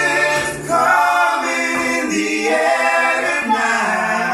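Several male voices singing together in harmony a cappella, in long held notes that shift pitch every second or so.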